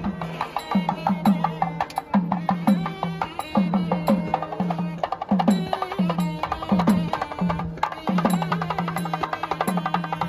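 South Indian temple music played live: a thavil drum beats a steady pattern of deep strokes that drop in pitch, about two a second, mixed with sharp cracks. Above it a nadaswaram plays a wavering reedy melody.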